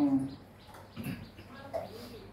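Buddhist monks chanting in Pali on one steady note; the chant breaks off just after the start. A quiet pause follows, with a couple of faint, brief soft sounds.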